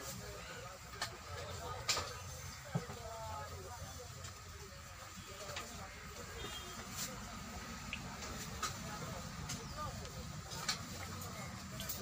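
Indistinct voices in the background over a low steady rumble, with a few sharp clicks and taps scattered through.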